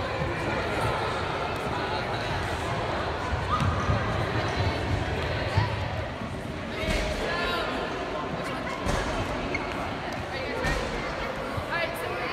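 Busy gymnasium with a hard echo: many children and adults talking indistinctly over one another, with soccer balls thudding and bouncing on the hardwood floor now and then.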